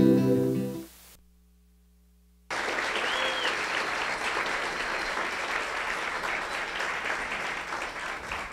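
Music fades out about a second in, then after a short silence an audience breaks into steady applause about two and a half seconds in, which tails off near the end.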